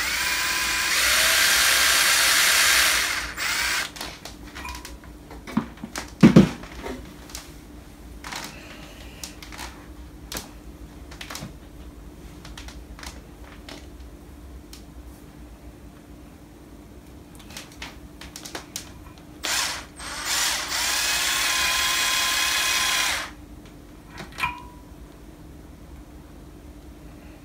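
Cordless drill running in two bursts of about three seconds each, near the start and about twenty seconds in, spinning a hook that twists a length of copper wire anchored in a vise into a tight strand. Between the bursts there is a sharp knock about six seconds in and light handling clicks.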